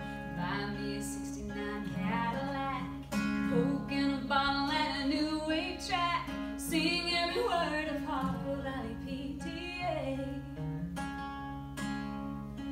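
Two acoustic guitars strumming a country song while a woman sings the melody; the voice drops out about eleven seconds in, leaving the guitars alone.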